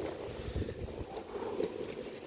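Wind buffeting the microphone over a steady rumble of something moving fast across a concrete floor, with a few low thumps about half a second and a second in.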